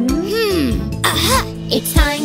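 Children's cartoon background music with a character's wordless voice sound gliding up and then down. About a second in comes a short, breathy, cough-like vocal sound.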